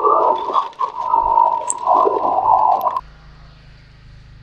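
Concrete mixer's turning drum tipped over a wheelbarrow, wet concrete pouring and scraping out of it in a loud, rushing, moaning noise. The noise cuts off suddenly about three seconds in, leaving only a low steady hum.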